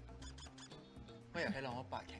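Drama soundtrack with soft, steady background music, and a short line of spoken dialogue about one and a half seconds in.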